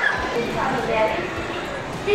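Roller coaster riders screaming and shouting, several high voices overlapping with sliding pitch.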